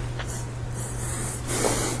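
Steady low electrical hum with a soft hiss that swells briefly in the middle.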